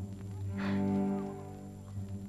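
Film score music: low bowed strings holding a sustained chord.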